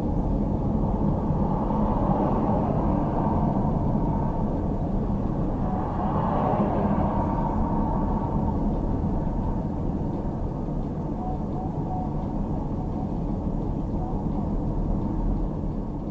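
Steady drone of engine and tyre noise on a wet road, heard from inside a moving vehicle's cab, swelling for a moment about six seconds in as a car overtakes close by.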